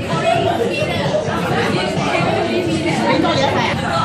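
Crowd chatter: many people talking at once in overlapping voices, with no single voice standing out.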